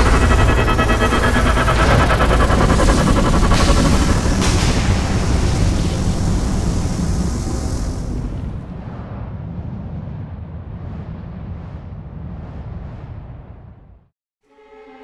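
A loud, deep rumbling blast sound effect with music underneath. Its high end falls away about halfway through, and the whole sound fades out toward the end.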